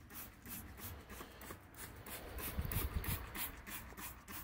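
Trigger spray bottle of wheel and tire cleaner being pumped rapidly at a tire, a short hiss with each squirt, about three a second. A low rumble rises about two and a half seconds in.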